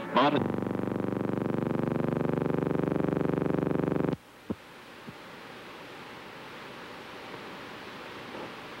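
A steady, buzzy tone, one low note rich in overtones like a held keyboard or synthesizer note, sounds for about four seconds and cuts off abruptly. A click follows, then only a faint hiss.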